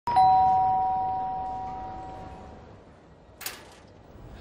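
Two-tone doorbell chime, a higher note then a lower one, ringing out and fading away over about two and a half seconds. A sharp click comes about three and a half seconds in.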